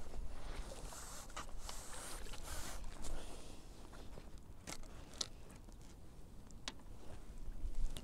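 Scattered sharp clicks, knocks and scrapes of fishing tackle being handled while a carp is brought into the landing net, over a low wind rumble on the microphone.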